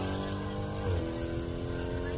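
Car engine and exhaust running under power at a steady pitch, with a brief drop in pitch about a second in like a gear change, slowly fading.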